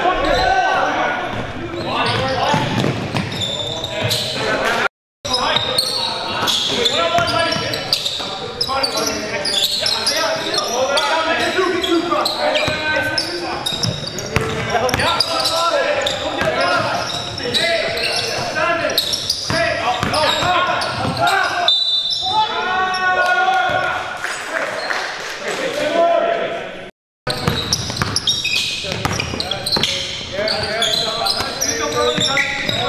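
Basketball game in a gym: indistinct players' voices over ball bounces and echoing court noise. The sound cuts out to silence briefly twice.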